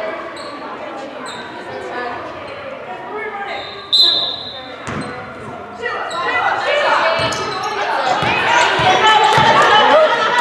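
A referee's whistle gives one short sharp blast about four seconds in, then basketballs bounce on the hardwood gym floor while spectators' voices shout and build in the echoing gymnasium as play restarts.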